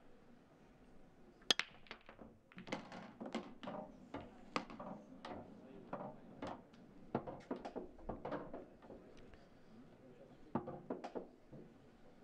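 A hard pool break: the cue strikes the cue ball with a sharp crack about one and a half seconds in, and it smashes into the rack of English eight-ball balls. A long run of clicks and knocks follows as the red and yellow balls collide with each other and rebound off the cushions, thinning out near the end.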